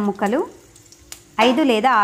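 Bay leaves, cumin seeds and ginger pieces sizzling faintly in hot oil in a pan, heard mostly in a pause between bursts of narrating voice, with one light click about a second in.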